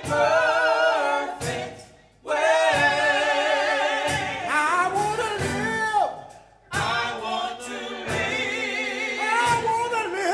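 A small group of voices singing a gospel song, with wavering vibrato on held notes and two short breaths between phrases.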